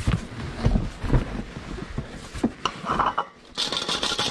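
A cardboard box being handled and its contents rummaged through: irregular knocks and rubbing of cardboard, with plastic folders and a decorative tin shifting and clinking, and a rustle near the end as the tin is lifted out.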